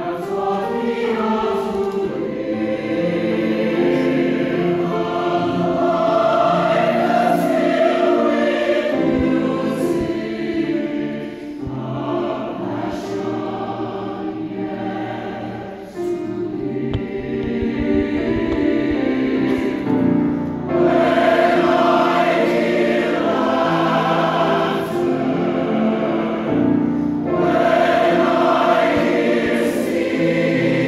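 Mixed choir of men and women singing in sustained chords. The singing softens for a few seconds about halfway, then comes back in strongly.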